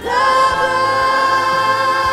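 Church choir with a female soloist singing a gospel song, coming in on one long note held with a slight waver.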